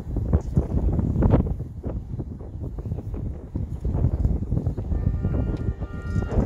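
High school marching band playing its contest show, largely covered by wind rumbling on the microphone, with scattered sharp hits. About five seconds in, the band comes in on held chords.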